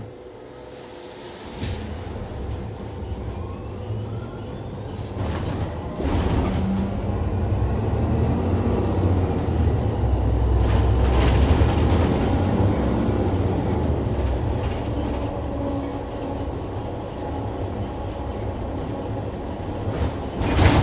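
Iveco Urbanway 12 Hybrid city bus pulling away from a stop, heard from inside. The low rumble of the drivetrain and tyres sets in a couple of seconds in, with a faint rising whine as it gathers speed, grows louder about six seconds in, then runs fairly steadily as the bus cruises.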